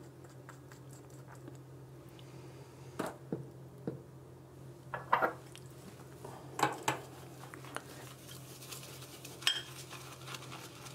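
A white ceramic shaving bowl and a synthetic shaving brush being handled at a sink: a scattered series of light clinks and knocks a second or so apart, as the bowl is picked up and the brush is set to work in it to start the lather. A faint steady hum runs underneath.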